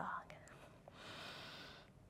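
A soft, faint breath of about a second in the middle, with a couple of light ticks just before it.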